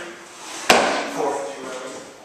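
A single sharp thump about a second in as a barbell is caught at the shoulders in a jump-and-catch clean: the lifter's feet stamp down on rubber gym flooring as the bar lands.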